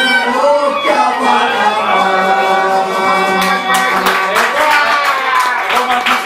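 Live Cretan music: a man singing over a Cretan lyra, with hand clapping joining in about halfway through.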